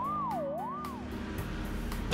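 Cartoon ambulance siren wailing, its pitch rising and falling smoothly about once every 0.6 seconds and stopping about a second in, over background music.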